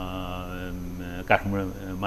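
A man's voice drawing out one long, level vowel for about a second, then going on speaking.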